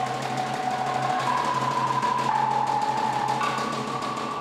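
Fast, dense drumming in a continuous roll for a Samoan group dance, with one held high note above it that steps up and down in pitch a few times.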